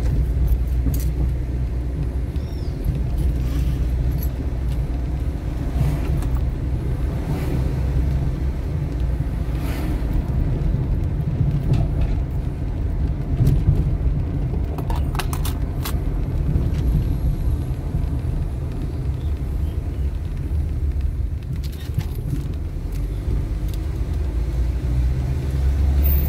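Inside a moving car: steady low rumble of the engine and tyres on the road, with a few brief light clicks or rattles, a cluster of them about fifteen seconds in.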